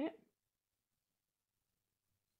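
A voice finishing a short spoken question at the very start, then near silence.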